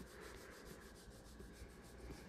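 Faint rubbing of bare palms rolling a bead of Apoxie Sculpt epoxy putty between the hands, in quick, even strokes.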